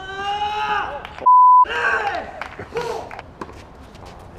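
A man's drawn-out cheering shout, then a steady single-pitch censor bleep that blanks out a word about a second and a quarter in, followed by more shouting and a few sharp clicks.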